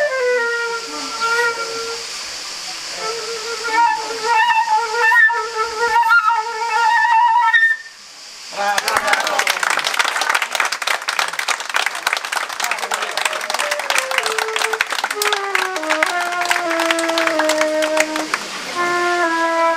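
Solo flute playing a slow melody of held and repeated notes, which ends about eight seconds in. Then an audience applauds, with flute notes stepping down in pitch under the clapping near the end.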